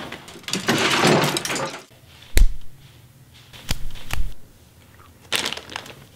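A scuffle between people: a long rush of rustling and clattering about a second in, then a few separate dull thumps and a short scrape near the end.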